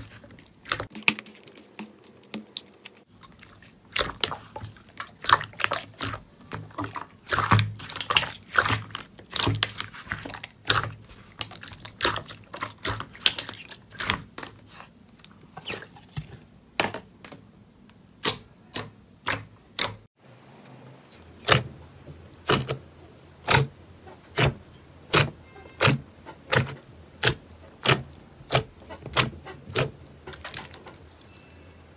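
Glossy slime being pressed and poked by hand, giving sharp wet clicks and pops as trapped air bursts. After a break about two-thirds through, the pops come in a steadier run of about two a second.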